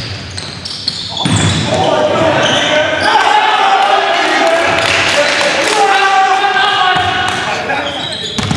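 Voices calling out in a large, echoing gymnasium, with a basketball bouncing on the hardwood court.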